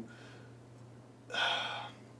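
A man's short, sharp intake of breath through the mouth, about half a second long, starting about a second and a half in, over a faint steady low hum.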